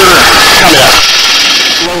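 Helicopter rotor and engine noise heard over the crew intercom, a steady rushing haze behind the crew's voices, which drops off sharply about halfway through.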